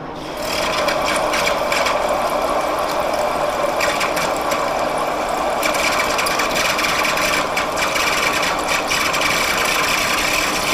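An engine lathe takes a heavy quarter-inch-deep roughing cut in chrome-plated steel with a carbide insert. Steady cutting and chip noise carries a steady high whine over it, starting about half a second in.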